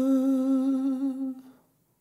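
A solo voice holding one long final sung note with a slight vibrato, unaccompanied, fading out about a second and a half in.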